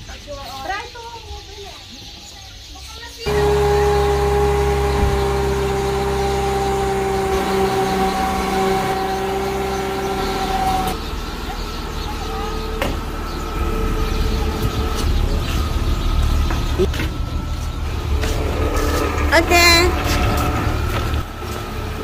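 A car engine, the Mercedes-Benz CLK's, comes in suddenly about three seconds in and then runs steadily at idle, a low rumble with a steady whine over it. A voice is heard briefly near the end.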